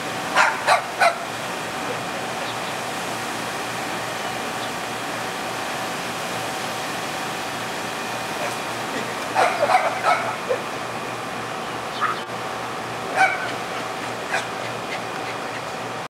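Small puppy yapping in short, high barks: three quick ones right at the start, a burst of several around the middle, then a few single yaps near the end, over a steady background hum.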